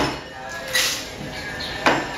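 Glassware being handled on a bar cart: two sharp glass clinks, one at the start and one near the end, with a brief rustle between them.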